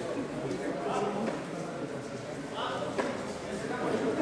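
Indistinct chatter of several people, echoing in a large sports hall, with one short knock about three seconds in.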